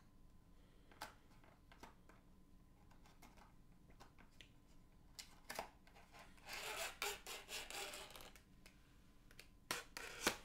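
A small cardboard-and-plastic toy package being handled and opened: quiet scattered clicks and scraping, then a louder stretch of rubbing and scratching over a couple of seconds, and a pair of sharp clicks near the end.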